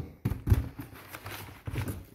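Crumpled packing paper rustling inside a cardboard box, with a few sharp knocks as a digital refrigerant manifold gauge is handled and lifted out.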